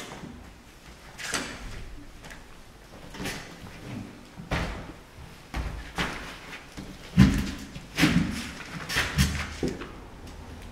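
A series of irregular knocks and thumps, roughly one a second, the loudest near the end.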